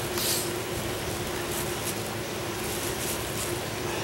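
A steady mechanical hum holding one constant tone, with a brief soft hiss about a quarter second in.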